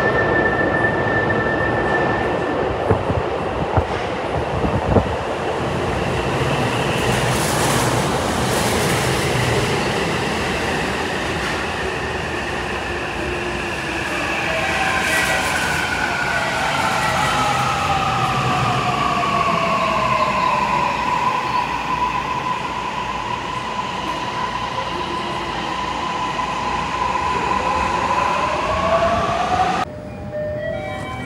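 Toei Mita Line 6500-series subway train pulling into an underground station, with steady running and wheel noise. Its electric traction motors' whine falls in pitch as the train brakes, then holds a steady tone near the end.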